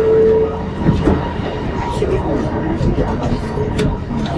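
Kelana Jaya Line LRT train standing at the platform with its doors open as passengers board: a steady low hum of the train, with a short tone in the first half second. There are murmuring voices and a sharp click near the end.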